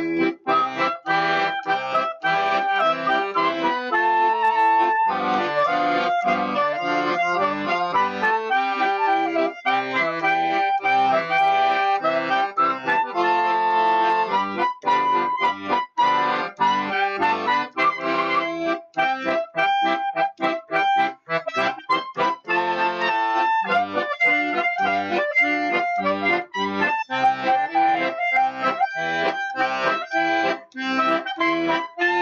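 Accordion and clarinet playing a Hanukkah song together: short rhythmic accordion chords under the clarinet's melody.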